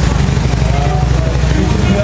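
A car driving past on the street, a steady low rumble with people talking nearby.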